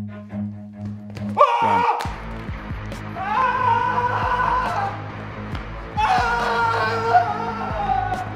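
A person screaming in fright over background music: a sudden cry that falls in pitch about a second and a half in, a thud just after, then two long screams.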